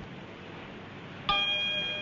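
A bell-like chime struck once a little past halfway, ringing on with several clear, steady tones over a faint hiss.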